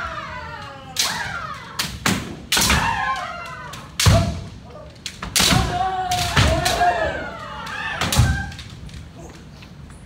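Kendo sparring: repeated sharp cracks of bamboo shinai striking armour and the thud of stamping feet on a wooden floor, mixed with the drawn-out kiai shouts of several fencers at once.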